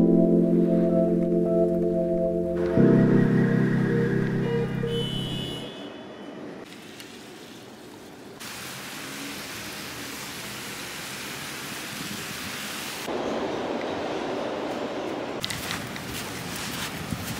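Background music with long held chords, fading out about five or six seconds in, giving way to steady city street noise: traffic, with car tyres on a wet, slushy road.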